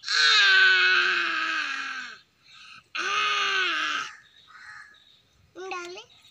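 A young child's high voice giving two long, loud drawn-out yells: the first lasts about two seconds and slides down in pitch, the second, shorter one starts about three seconds in.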